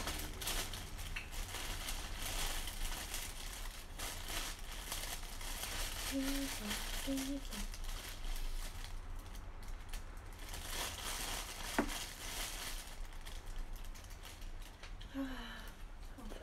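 Plastic packaging being handled, crinkling and rustling in uneven spells. It is heaviest in the first few seconds and again about two-thirds of the way in. A few short voice sounds come about halfway, and a single sharp click near the end.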